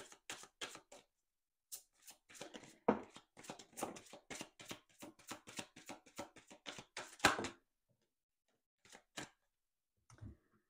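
A deck of oracle cards shuffled by hand: a quick, irregular run of soft card slaps and riffles that stops about seven and a half seconds in, followed by a couple of light taps as cards are set down on the table.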